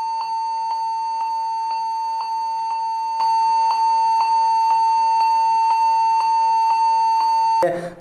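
Computer's continuous startup warning beep: one steady unbroken tone with a faint tick about twice a second, a little louder about three seconds in. A continuous beep that the speaker puts down to dust on the RAM's gold contact pins.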